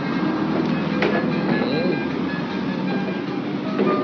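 Steady noise of street traffic.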